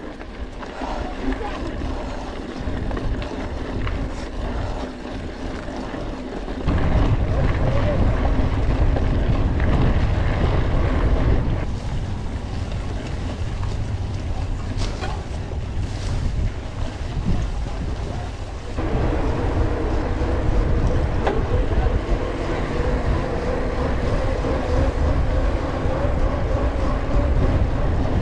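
Wind buffeting the microphone of a camera mounted on a moving mountain bike, with a heavy low rumble from riding over the rough dirt and grass track. The rumble grows stronger about seven seconds in, eases near the middle and grows strong again in the last third.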